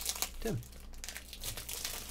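Trading cards handled by hand: a run of light crinkling and small clicks as the thick cards are moved and shuffled, with one short spoken word about half a second in.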